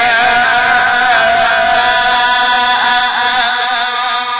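A man's voice in melodic Qur'an recitation, drawing out one long held note that bends into ornamental turns in the last second or so.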